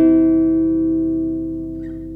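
Dusty Strings FH36S lever harp, tuned to A=432 Hz, played in slow improvisation. A chord is plucked at the very start and left to ring, fading away over the two seconds.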